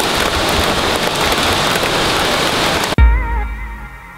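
Steady rain falling, a loud even hiss, which cuts off suddenly about three seconds in. Music follows, opening with a deep bass hit and wavering high notes that fade.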